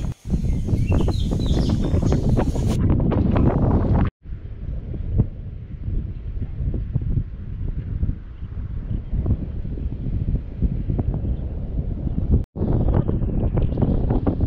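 Wind buffeting the microphone of a camera outside a moving vehicle's window, a loud low rumble with gusty streaks. It drops out abruptly for a moment about four seconds in and again near the end.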